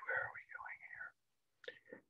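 A man's quiet, muttered speech trailing off, then near silence with a brief faint murmur near the end.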